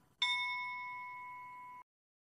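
A single struck bell-like ding that rings and slowly fades, then cuts off suddenly.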